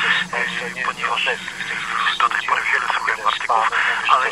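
Speech: a caller's voice coming through a telephone line on a radio broadcast, sounding narrow and thin, with a steady low hum underneath for the first couple of seconds.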